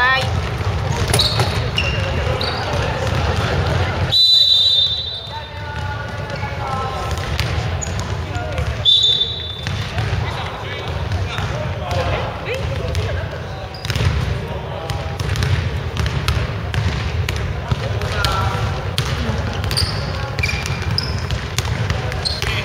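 Basketball game sounds on a wooden gym court: a basketball bouncing on the floor and short, high sneaker squeaks as players run and cut, among players' voices calling out, over a steady low hum.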